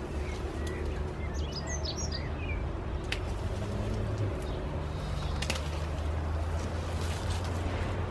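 Birds chirping in the first couple of seconds over a steady low background rumble, and two sharp snips of hand pruners cutting forsythia stems, about three and five and a half seconds in.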